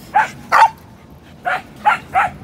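A small dog barking: four short barks in two pairs, about a second apart.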